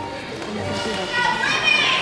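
Background chatter of children's voices in a gym hall, several voices overlapping, with a high-pitched child's voice rising out of it near the end.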